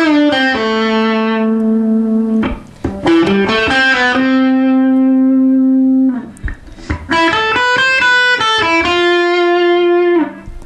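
Electric guitar playing an improvised lead line from the A minor scale in short phrases, like sentences: a few quick single notes, then a long held note, then a brief pause. Three such phrases are heard.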